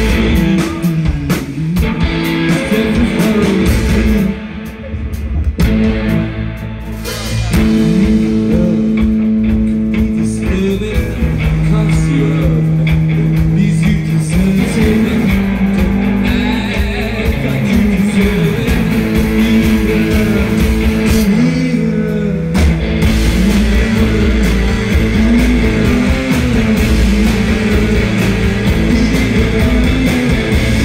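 Rock band playing live: electric guitars, bass and drum kit at full volume. The band drops to a quieter passage about four seconds in, then comes back in full at about seven and a half seconds.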